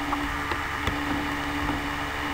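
Steady low hum with faint hiss, the background noise of the voice recording, with a couple of faint ticks about halfway through.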